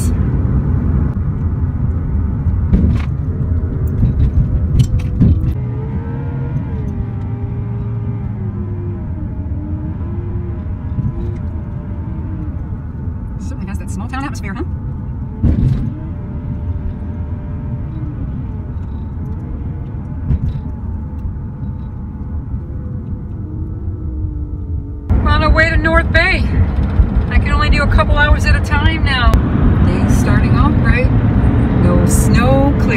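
Low, steady rumble of a van's engine and tyres heard from inside the cab while it drives. About 25 seconds in, the sound cuts abruptly to a louder driving rumble.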